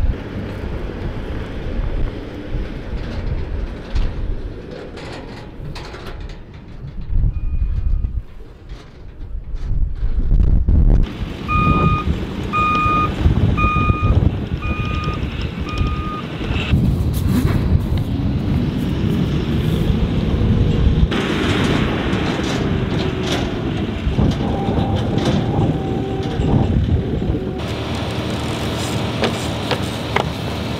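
Pickup truck engine running as it tows a trailer. A backup alarm beeps about once a second, five times near the middle.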